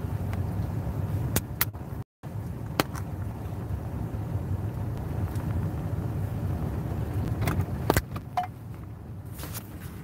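Steady low rumble inside a car's cabin, with scattered sharp clicks and knocks from the phone being handled. The sound cuts out completely for an instant about two seconds in.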